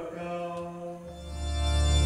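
A held chanted note ends, and about a second in an electronic keyboard starts a low, sustained organ-like chord that swells steadily louder.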